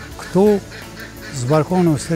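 Mallard duck quacking once, a short call about a third of a second in.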